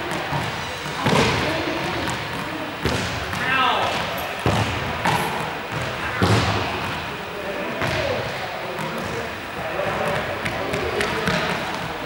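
A handful of sharp thumps on a hard sports-hall floor, each ringing on in the big echoing hall, with voices talking and calling out between them.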